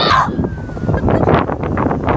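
A person laughing breathily close to the phone's microphone, in a run of short gasping bursts from about a second in.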